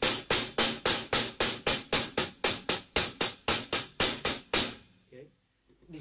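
Drumstick striking a hi-hat in an even run of about four strokes a second, stopping a little before five seconds in.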